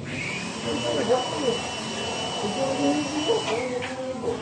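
A small electric motor whining at a steady high pitch: it spins up just after the start, runs evenly, and winds down and stops about three and a half seconds in. Voices murmur underneath.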